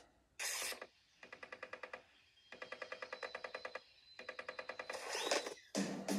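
A cartoon transition sound effect from a TV speaker: a short burst, then three runs of rapid rattling pulses at about ten a second, then a short rising swish near the end.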